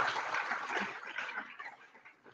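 Audience applauding, the clapping thinning out and dying away about a second and a half in.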